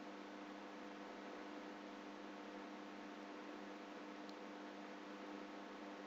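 Steady electrical hum with a hiss over it: the background noise of the recording setup. There is no other distinct sound.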